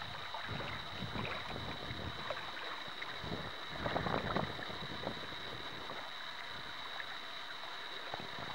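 Outdoor riverbank ambience: wind buffeting the microphone and river water lapping, swelling louder about four seconds in. A thin, steady high-pitched whine sits above it.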